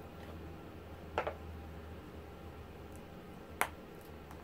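Two short, sharp clicks as meerschaum pipes and a pipe case are handled, a softer one about a second in and a louder one near the end, over a low steady hum.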